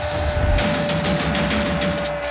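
Arena game-clock buzzer sounding one long steady tone, signalling time expiring on the clock, over background music with a fast percussive beat.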